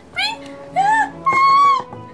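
Very high-pitched, squeaky put-on character voice giving two short sing-song calls and then one long held note, over quiet background music.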